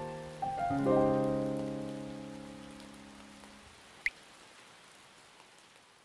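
Piano notes ending on a chord about a second in that rings and dies away over a few seconds, over a steady rain sound that fades out. A single water-drop plink sounds about four seconds in.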